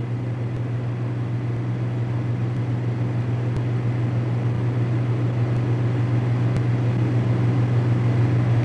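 A steady low hum over a constant hiss of noise, growing slightly louder over the seconds.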